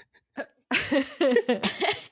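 Women laughing: a short catch of breath, then a run of quick, gasping laughter starting about two thirds of a second in.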